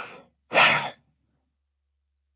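A man sighs into a close microphone: the tail of a breath in, then one short, heavy breath out about half a second in.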